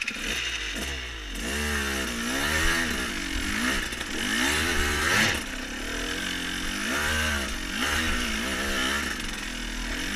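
KTM 200 EXC two-stroke single-cylinder dirt bike engine pulling under load up a steep, slippery hill. The revs rise and fall every second or so as the throttle is worked, with the engine grunting up the climb.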